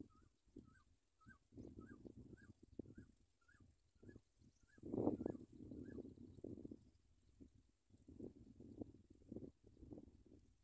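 Faint, evenly repeated short bird chirps, about three every two seconds, that stop about six seconds in, over irregular low rumbling noise that peaks about five seconds in.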